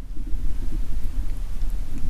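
Low, unsteady rumbling background noise with no distinct events.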